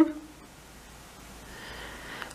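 Quiet room tone with a faint low hum, after a word cut off right at the start; a faint soft hiss rises near the end.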